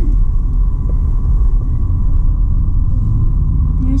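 Car cabin noise while driving: a steady low rumble of engine and road noise heard from inside the car.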